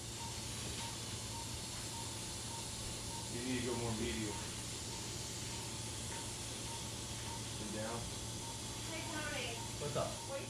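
Surgical suction running with a steady hiss over a low equipment hum, with a faint regular beep and brief murmured voices.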